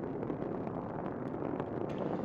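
Space Shuttle rocket roar during ascent from the solid rocket boosters and main engines: a steady, dense rumble with faint crackle.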